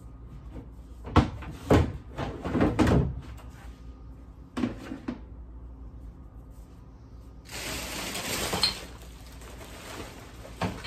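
Plastic trash can lid being handled: a series of hollow plastic knocks and clacks in the first three seconds, two more about five seconds in, then about a second and a half of plastic bin bag rustling near the end.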